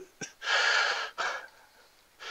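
A man's long audible breath, lasting a little over half a second, followed by a small click.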